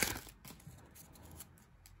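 Faint rustling and small clicks of hockey cards being slid out of a torn foil pack wrapper and handled. The sound is loudest at the very start, then turns to soft, scattered ticks.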